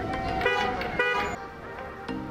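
Car horn honking twice in short toots, about half a second apart.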